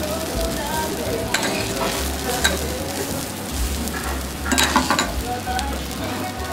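Wagyu hamburger steak patties sizzling steadily on a hot griddle, with a metal spatula and knife clicking and scraping against the plate as a patty is lifted and turned; a quick run of louder clicks comes about four and a half seconds in.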